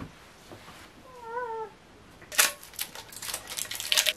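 A short wavering meow-like cry about a second in, then a quick run of clicks and rattles as the metal end cap of a cardboard mailing tube is handled and pried open.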